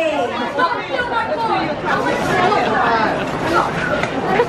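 Indistinct chatter of several voices talking at once, with no single clear speaker.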